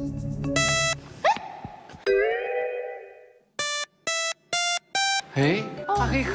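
A homemade electronic fruit piano sounds synthesized notes as the wired fruits are touched. There is a short note, then a longer note that dies away, then four short notes in quick succession.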